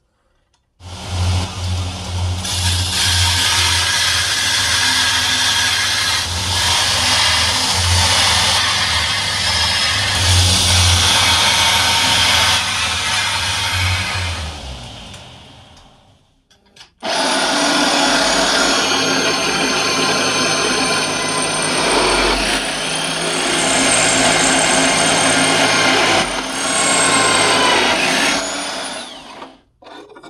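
A power tool cutting and grinding sheet steel for about fourteen seconds, its motor humming low underneath. After a short pause, a drill press bores holes through the steel plate for about twelve seconds, with thin whining tones from the bit in the metal.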